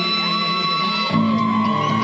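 Live band music with loud, held notes and some wavering pitched tones; a louder low note comes in a little over a second in.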